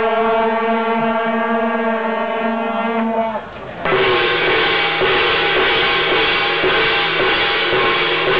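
Shaojiao, long straight brass horns, sound one held chord that cuts off about three and a half seconds in. After a brief pause a large gong is struck over and over, its ringing filling the rest of the time.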